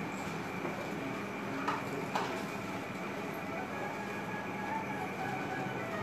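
Steady mechanical background noise with a faint hum, broken by two sharp clicks about two seconds in.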